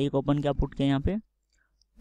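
A man's voice speaking Hindi for just over a second, with a couple of short clicks among the words, then a pause with near silence.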